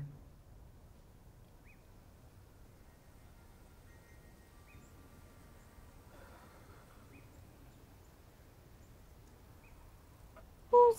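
Near silence: faint outdoor ambience with four faint, short chirps a few seconds apart, likely small birds.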